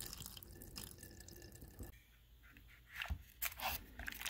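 Water trickling from a tube into the bottom of a plastic seed tray, filling it beneath a foam plug tray; the flow stops about two seconds in. Near the end come a few short scuffs and knocks as the foam tray is handled.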